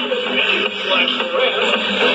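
Soundtrack of an animated TV programme playing: background music with voices over it.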